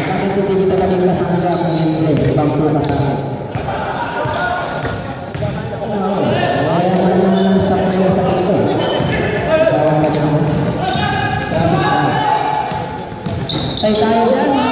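A basketball being dribbled and bouncing on a hardwood gym floor during play, with men's voices talking throughout in the echoing hall.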